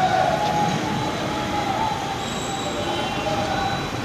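Steady street traffic noise at a busy road junction, a continuous roar with a faint squealing tone running through it.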